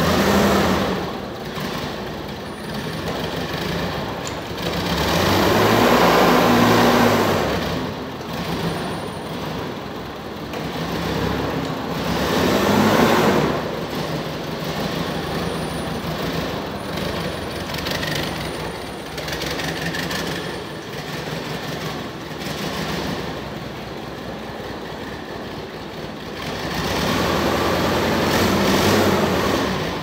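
Yale forklift's engine running as the forklift is driven, swelling louder three times: about five seconds in, around thirteen seconds, and again near the end.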